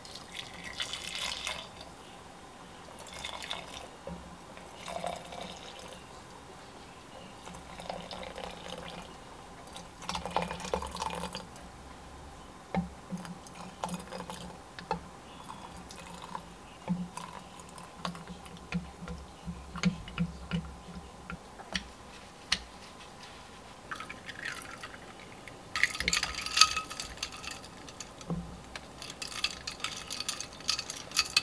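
Mulled wine poured from a ladle into a glass pitcher in several short splashing pours. Between the pours come light clicks against the glass, and near the end a louder burst of clinking and splashing.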